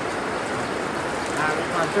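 A steady, even hiss, like rain falling on a surface, with no rises or breaks.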